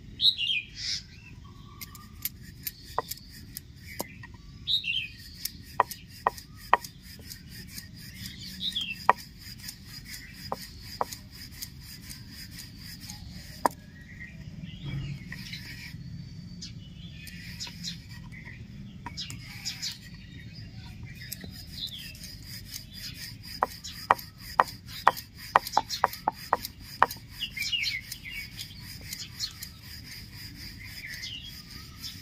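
Wooden rolling pin rolling out stuffed paratha dough on a wooden board: a steady soft rubbing broken by sharp clicks and knocks, many in quick succession late on. Birds chirp now and then in the background over a steady high-pitched tone.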